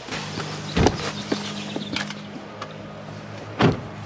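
A car door thudding shut twice, once about a second in and louder near the end, over a steady low hum from the car.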